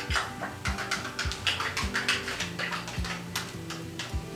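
Plastic knife stirring thick gel stain in a can, knocking and scraping against the can in a quick, irregular run of clicks, over soft background music.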